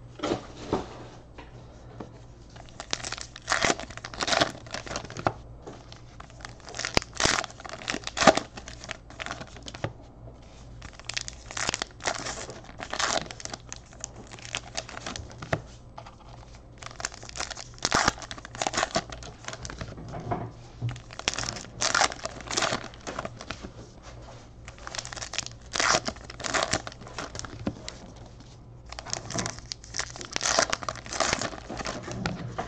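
Trading-card pack wrappers being torn open and crinkled by hand, in bursts of crackling every four or five seconds.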